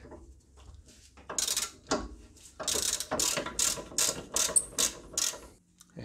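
Hand ratchet with an 18 mm socket clicking in short repeated strokes as it spins out a loosened caliper bracket bolt. The strokes are faint at first and come steadily at about three a second from about a second and a half in, stopping shortly before the end.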